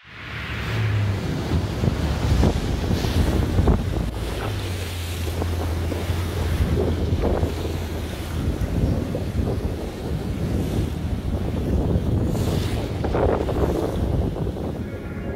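Wind buffeting the microphone over sea waves, filmed from a boat on open water, with the boat's engine giving a steady low drone underneath.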